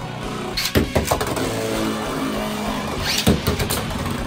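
Beyblade X spinning tops whirring on a plastic stadium floor, with sharp clacks of impacts under a second in and again near the end.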